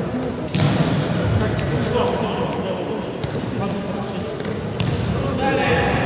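A futsal ball being kicked and passed on a wooden sports-hall floor: several sharp knocks spread across a few seconds, echoing in the large hall, over a steady murmur of players' voices.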